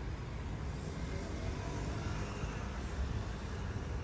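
Outdoor street ambience: a steady rumble of road traffic.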